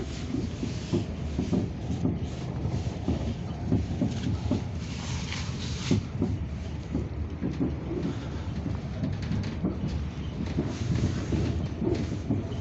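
Passenger train running at speed, heard from inside the carriage: a steady low rumble and hiss with irregular clicks and knocks from the wheels on the track.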